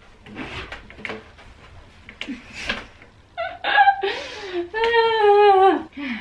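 A woman's long, wordless whining groan of frustration, wavering in pitch and held for over two seconds near the end, after a few seconds of soft breathy sounds.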